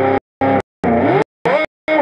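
Electric guitar played through an analog echo unit, with notes sliding and bending in pitch. The sound comes in short bursts of a fraction of a second, each cut off abruptly by a gap of silence, about five in two seconds.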